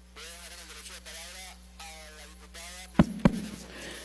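Faint off-microphone talk in a large chamber, then two sharp knocks close together about three seconds in: handling noise from a handheld microphone being picked up.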